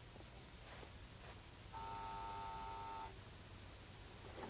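An electric desk buzzer sounds once, about two seconds in: a steady buzz lasting just over a second, then it stops. Its likely purpose is to summon the visitor waiting outside the office.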